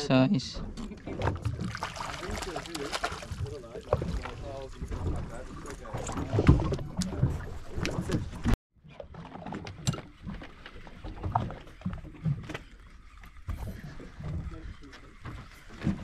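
Indistinct voices of people on a fishing boat's deck over the noise of the boat on the water; the sound cuts out for an instant about halfway through.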